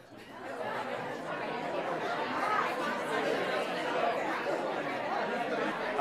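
Crowd chatter: many people talking at once in small groups, a dense, steady murmur of overlapping voices that swells up over the first second.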